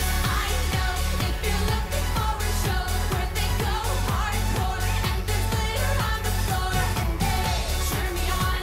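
Live dance-pop performance: a female singer sings into a handheld microphone over a loud electronic backing track with a steady, driving beat.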